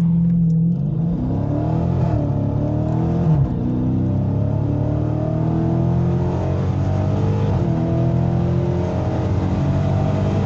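Dodge Scat Pack's 392 Hemi V8 at full throttle from a standing launch, heard inside the cabin: the revs climb, drop back at each upshift and climb again through the gears.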